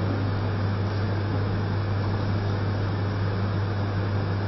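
Steady low electrical hum with an even hiss behind it, unchanging and with no speech.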